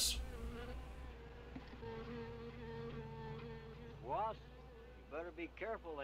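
A wasp swarm buzzing in a steady drone on an old film soundtrack, over a constant low hum. Brief voice-like sounds come in about four seconds in and again near the end.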